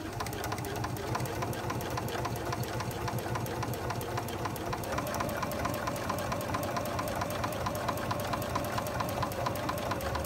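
Domestic sewing machine stitching steadily at medium speed through three quilt layers, its needle ticking rapidly and evenly over a running motor hum.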